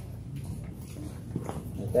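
Steady low room rumble in a large hall, with a couple of faint knocks and shuffles about one and a half seconds in as a man sits down in a chair at the meeting table.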